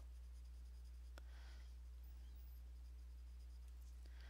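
Faint scratching of a coloured pencil on the paper of a colouring book as a petal is shaded with light feathering strokes, over a steady low hum, with one small click about a second in.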